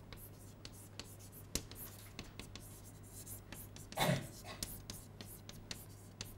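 Chalk writing on a blackboard: a run of quick taps and short scratches as the letters are stroked out. A brief murmur of a man's voice comes about four seconds in.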